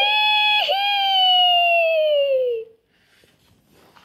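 A person's high-pitched voice holding one long cry, with a brief catch just over half a second in, then gliding slowly down in pitch for about two more seconds before stopping abruptly.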